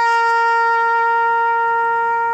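Solo trumpet sounding a military salute call, holding one long steady note.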